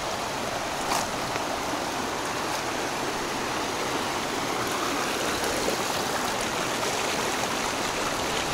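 Steady rushing of a mountain river's flowing water.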